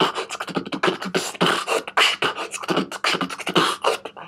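Human beatboxing into cupped hands: a fast run of mouth-made kick, snare and hi-hat sounds in a steady groove.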